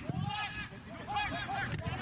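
A man shouting in a string of short, high-pitched cries without clear words.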